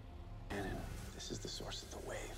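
A voice speaking in a hushed whisper, starting about a quarter of the way in, over a low steady hum.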